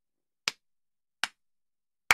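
Two sharp hand claps, about three-quarters of a second apart.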